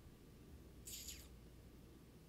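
Near silence: room tone with a low hum, broken about a second in by one brief high-pitched chirp that falls in pitch.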